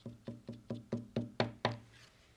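White marker tip tapped rapidly on a card lying on a wooden tabletop, dotting on snowflakes: a steady run of wooden knocks, about four a second, each with a short low ring. The last two are louder, and the tapping stops just before the end.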